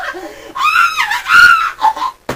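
A person screaming in a high pitch: two long screams starting about half a second in, the second the loudest, after a couple of short vocal sounds. It is a play-acted scream in a staged scuffle.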